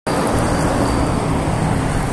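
Steady road traffic noise from cars and trucks passing on a multi-lane avenue, with a heavy box-trailer truck going by close at hand.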